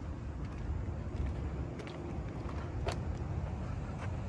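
Steady low rumble of outdoor background noise, with a few faint clicks around the middle.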